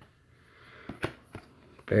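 A few light clicks and taps as a card certificate is handled in the hands, over a faint rustle. A man's voice starts right at the end.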